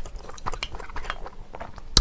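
Close-up chewing of a mouthful of Buldak carbonara stir-fried noodles: soft, wet, irregular mouth clicks, with one sharper click near the end.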